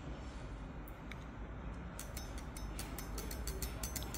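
Faint small clicks and ticks of a spring caliper being handled and its knurled adjusting nut turned, coming several a second from about halfway through, over a low steady hum.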